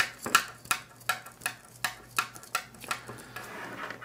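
Irregular small metallic clicks and taps as a coax cable's metal F-connector is handled and fitted onto the port of a metal MoCA 2.5 coax splitter.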